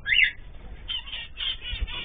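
A mixed group of pet birds, cockatiels, zebra finches and canaries, chirping and calling, with one loud rising call at the very start and scattered shorter chirps after it.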